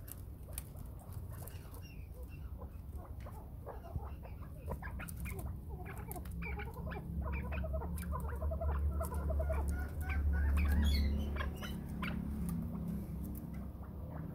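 Young cross-bred chukar partridges in bamboo cages giving soft, short clucking and chirping calls, busiest through the middle, among scattered light clicks and taps. A low rumble swells in the middle and falls away again.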